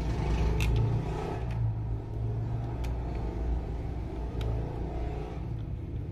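A steady low rumble, like a vehicle engine running close by, with a few faint, sharp clicks of a small screwdriver turning screws into a plastic toy house.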